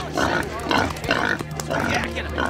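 Pigs making noise in a pen over a low, steady droning music score.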